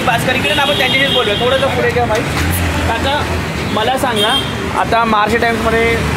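A man talking over street traffic noise.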